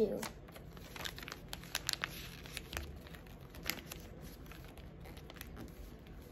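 Origami paper being folded and creased by hand: scattered crisp crinkles and little crackles, busiest in the first few seconds and thinning out near the end.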